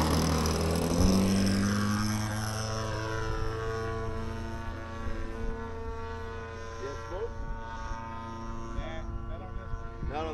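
Electric ducted-fan RC model jet whining, a steady pitched tone that fades slowly as it moves away. Faint voices come in near the end.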